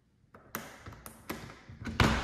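Footsteps on a hard floor: a series of light taps, about two a second, starting a moment in.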